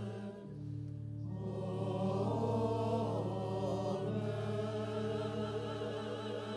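Church choir singing with organ accompaniment: sustained organ chords underneath, with the voices dropping out briefly near the start and coming back in about a second in.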